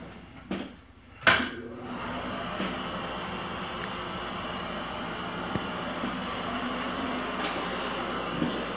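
A wall switch clicks about a second in, then a bathroom exhaust fan starts and runs with a steady hum and rush of air.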